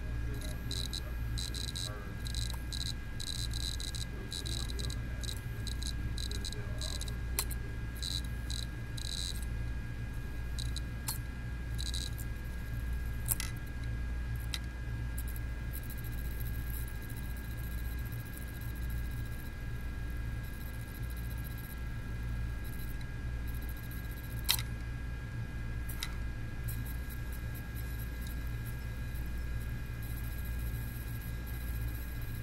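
Opened laptop-size hard drive running with its platter spinning, giving a steady hum and whine. Its read/write head clicks in rapid runs for about the first ten seconds, then only now and then with single sharp clicks. It keeps trying and failing to read, because the head is contaminated and the platter is scratched and smudged.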